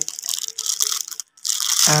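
Clear plastic bag of wiring parts crinkling and rattling as it is handled, breaking off for a moment a little past halfway.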